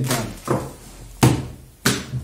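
Tarot cards and deck set down on a tabletop: about four sharp taps, the two loudest a little past one second and just before two seconds in.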